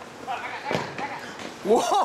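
Players calling out during a futsal game, with a single sharp thump of the futsal ball being struck about three quarters of a second in, then a loud rising "oh!" shout near the end.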